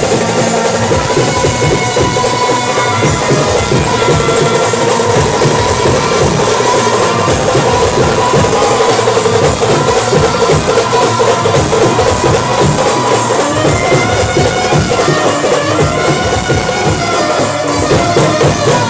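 Loud live band music played through a truck-mounted loudspeaker rig: a held, wavering melody over fast, dense drumming on a strapped-on drum beaten with sticks.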